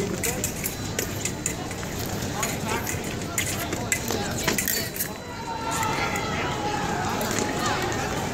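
Hubbub of a busy fencing tournament hall: steady background voices, with scattered sharp clicks and taps from blades and footwork during an épée bout through the first five seconds. Near the end a voice rises above the chatter.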